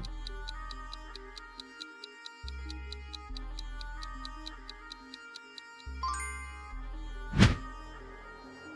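Countdown timer sound effect: rapid clock-like ticking, about five ticks a second, over background music with a bass line, then a brief loud whoosh near the end.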